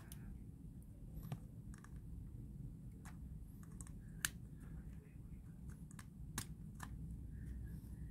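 Scattered small plastic clicks and taps from fingers handling a car cigarette-lighter USB adapter and working a USB cable's plug in its socket, the sharpest click about four seconds in, over a faint low background hum.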